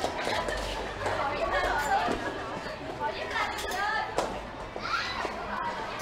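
Indistinct voices of several people chattering and calling out in a large room.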